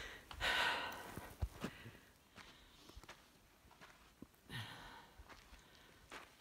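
A person breathing hard from the effort of climbing a steep trail: two long sighing exhales, one just after the start and one about four and a half seconds in. Faint footsteps fall in between.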